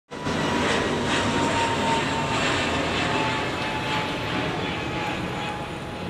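Steady street noise: a dense rumble and hiss of traffic, with a faint thin tone held for a few seconds at a time.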